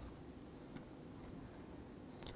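Faint scratching of a pen stylus drawn across a tablet screen: a light tap a little before the middle, then a longer scratchy stroke in the second half.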